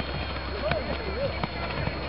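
Footsteps of a pack of runners passing on a grass and mud cross-country course, heard as a few scattered thuds, over background voices and a steady low hum.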